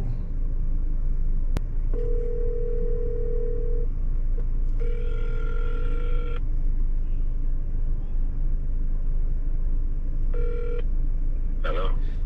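Outgoing phone call ringing out: a steady ringback tone about two seconds long, then a second ring of about a second and a half with a higher tone over it, and a short beep near the end as the call connects. A low, steady car-cabin rumble runs underneath.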